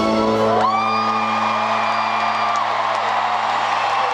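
Live band's song ending: the drums and bass drop out about half a second in, leaving a sustained chord ringing. A high whoop rises sharply and is held for about two seconds over it.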